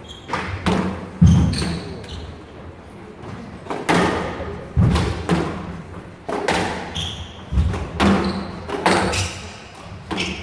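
Squash rally: the ball is struck by the rackets and smacks off the front wall and the glass court walls in a string of sharp cracks and thuds, roughly one every half second to second, with a brief lull about two seconds in. Short high squeaks of court shoes on the wooden floor come between the hits.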